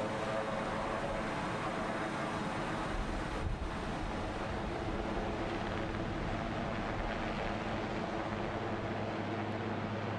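Marine One, a Sikorsky VH-3D Sea King helicopter, lifting off and climbing away: the steady noise of its turbine engines and main rotor, with a low hum throughout and a brief dip about three and a half seconds in.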